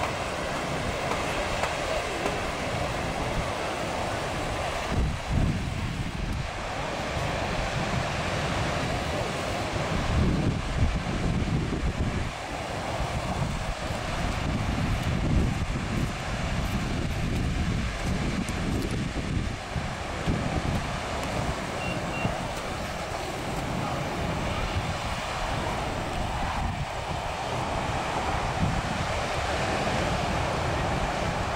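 Wind gusting on the microphone in irregular low rumbles, over a steady wash of ocean surf.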